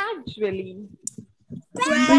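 Voices repeating a word aloud in a pronunciation drill, coming over an online call. There is a short pause in the middle with a few faint clicks.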